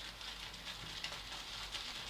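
Shaving brush working shaving cream into a lather: a faint, steady wet crackle with a few small ticks.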